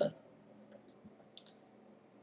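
A few faint, short clicks, scattered over about a second in the middle of a quiet pause, typical of clicks on a computer mouse or pen tablet.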